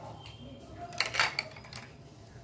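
Hard plastic Paw Patrol Rubble toy clicking and rattling in the hands, as the pup figure is pulled out of its bulldozer: a quick cluster of four or five sharp clicks about a second in.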